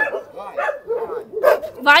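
Dogs barking in several short calls, mixed with people's voices.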